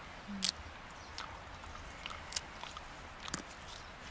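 Someone chewing a raw, tough plantain leaf: scattered soft crunches and mouth clicks, with a brief closed-mouth hum near the start.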